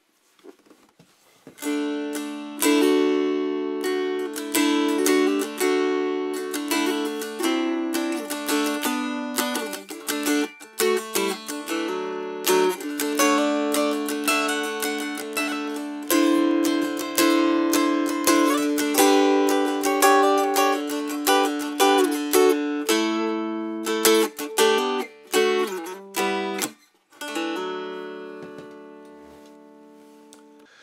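McCafferty-Seifert model mountain dulcimer played acoustically, heard through a microphone only, without its pickups: a quick strummed tune over steady ringing drone notes. Near the end the last chord is left to ring out and fade.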